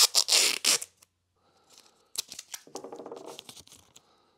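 Masking tape being ripped off its roll and torn into strips: a loud sharp rip at the start, then a longer buzzing pull of tape off the roll between about two and three and a half seconds in.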